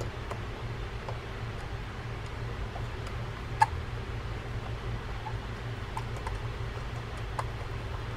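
Small screwdriver turning screws into the metal side plate of a Penn International 12LT lever-drag reel: scattered faint clicks and ticks, with one sharper click about three and a half seconds in. A steady low hum runs underneath.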